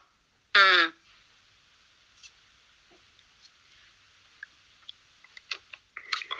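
One short spoken syllable about half a second in, falling in pitch, then a pause of faint hiss with a few small clicks near the end.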